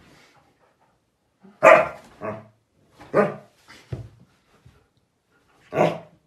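Siberian husky barking: about five short, separate barks a second or so apart, the first the loudest.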